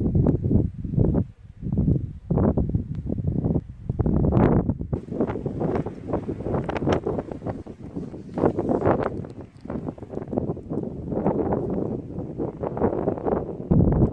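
Wind buffeting the microphone in irregular gusts, a low rushing that swells and drops every second or so.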